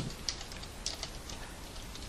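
Steady faint room hiss with a few soft, scattered clicks.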